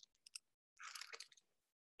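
Near silence: a few faint clicks and a brief soft rustle about a second in, with the sound dropping to dead silence twice.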